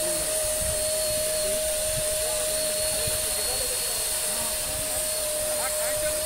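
Electric disinfectant sprayer running steadily: a constant motor hum with an even hiss of spray.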